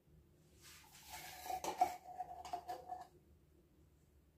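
A metal spoon scraping and clinking against the inside of an emptied condensed-milk tin, with a ringing metal tone. It lasts about two and a half seconds, then stops.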